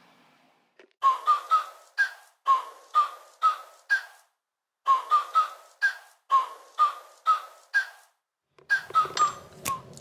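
A whistled tune of short notes at varying pitch, about two a second, in three phrases with brief pauses between them and no background sound between the notes.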